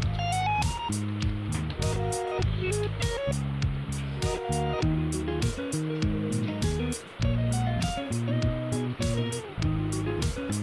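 Background music with guitar playing changing notes over a steady, quick percussion beat.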